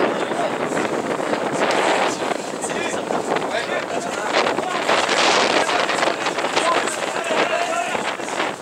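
Indistinct voices of spectators and players calling out around a rugby pitch, with wind buffeting the microphone.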